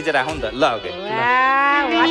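A long moo that starts about a second in, rising and then falling in pitch before settling into a low, steady drone, after a few brief voice sounds.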